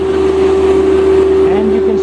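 Boatyard travel lift running: a loud, steady engine drone with a constant whine on top.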